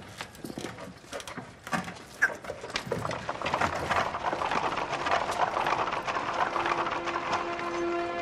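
Horse hooves clip-clopping: scattered knocks at first, then a louder, busier clatter from about three seconds in. Music comes in near the end.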